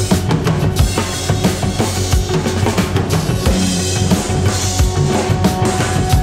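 Music with a steady drum-kit beat: a regular kick drum about every 0.8 s with snare hits over sustained held tones.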